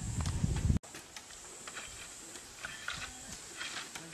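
A low rumble, cut off suddenly about a second in. Then scattered light knocks and taps from work on wooden and bamboo fence posts, with faint voices.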